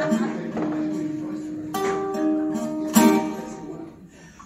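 Acoustic guitar played solo between sung lines, with strummed chords struck a couple of times that ring on and fade toward the end.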